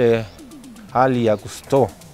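A man's voice speaking a few short syllables, with pauses between them.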